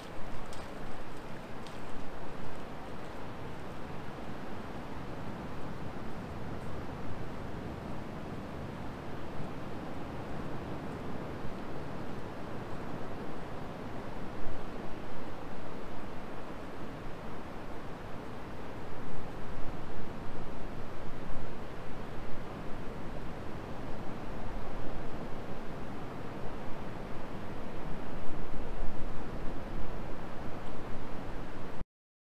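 Wind blowing on a GoPro's microphone over the wash of distant surf: a continuous rush of noise, heaviest in the low end, that swells in gusts through the second half.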